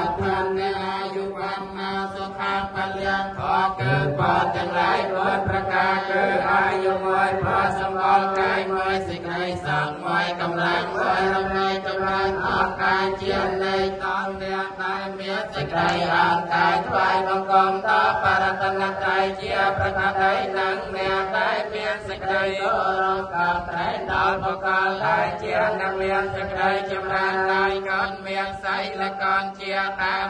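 Buddhist chanting of Pali verses, with voices reciting continuously on a steady, near-monotone pitch.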